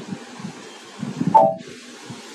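Steady low hiss of room and microphone noise, with one brief murmur of a man's voice about a second and a half in.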